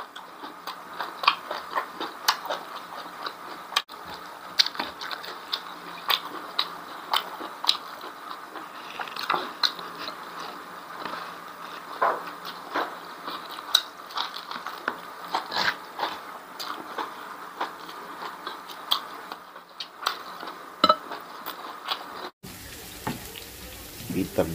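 Close-miked eating sounds: wet chewing and lip smacking on fried beef tripe and rice, a dense, irregular run of sharp smacks and clicks. In the last second or two it cuts to hot oil sizzling in a wok as the tripe fries.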